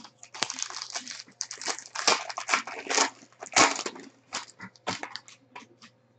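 Foil trading-card pack crinkling as it is handled and opened: a rapid, irregular run of crackles.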